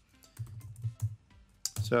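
Computer keyboard typing: a handful of quick keystrokes as a word is typed into a spreadsheet formula.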